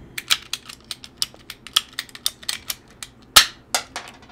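Handheld ratcheting PEX tubing cutter being squeezed through red PEX tubing: rapid plastic clicks, about five a second, then one loud snap about three and a half seconds in as the blade cuts through the tube.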